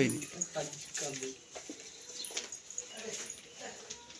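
Quiet, broken-up voices of several people, with short pitched vocal sounds and a louder sound right at the start.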